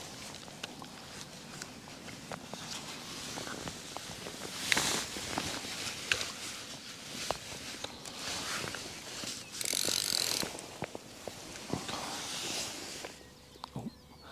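Fishing reel being wound after casting a waggler float, its mechanism ticking with many small clicks. A brief swish comes about five seconds in and a short hiss near ten seconds.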